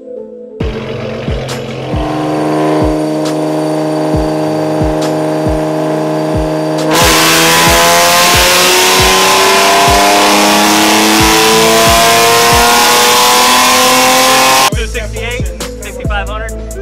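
Dodge Charger engine on a chassis dyno, running at a steady speed in gear, then making a full-throttle pull about seven seconds in, its pitch climbing steadily for about eight seconds before it cuts off suddenly near the end. Background music with a steady beat plays underneath.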